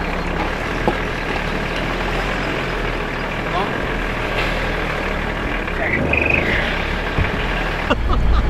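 A car engine idling steadily, heard from inside the stopped car, under an even hiss of background noise. A brief high-pitched sound comes about six seconds in.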